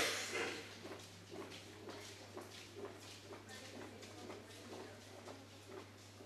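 Faint, indistinct background voices over a steady low hum, after a brief louder sound at the very start.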